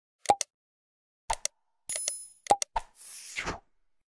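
Animated subscribe-button sound effects: pairs of short pops and clicks, a bright bell ding about two seconds in, then a short whoosh near the end.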